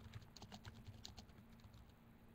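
Computer keyboard typing: a faint, quick run of about a dozen keystrokes that stops about a second and a half in.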